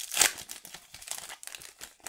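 Foil-lined trading-card booster pack wrapper crinkling as it is torn open and the cards are pulled out: a dense, irregular crackle, loudest just after the start and thinning toward the end.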